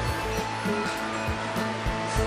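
Background music over the steady hum of a motorized roller blind's tubular motor as the blind lowers.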